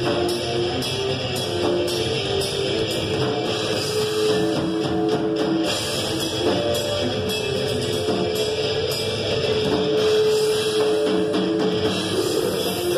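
Live rock band playing loud: electric guitar holding long notes that change pitch slowly, over a drum kit keeping a steady beat of hits and cymbals.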